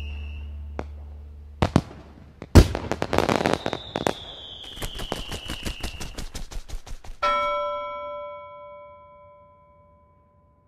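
Fireworks: a couple of sharp bangs, a whistle falling in pitch, and a long run of rapid crackling pops. A little after seven seconds, a single bell-like chime rings out and slowly fades.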